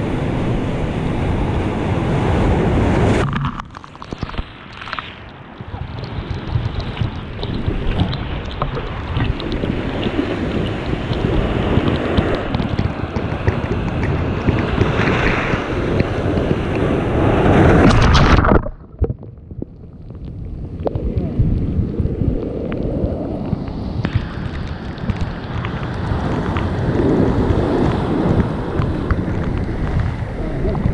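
Ocean waves breaking on rocks, with seawater rushing and foaming around them close by, and wind buffeting the microphone. The rush drops away suddenly about three seconds in and builds to its loudest a little past halfway. It then cuts off abruptly and swells back up near the end.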